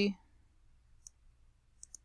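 Computer mouse button clicking: one short click about halfway, then two more close together near the end.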